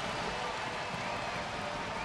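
Steady murmur of an ice-hockey arena crowd, with no cheering or clear single sounds.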